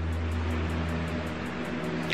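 Steady low hum with a faint hiss: background room noise, with no clear event.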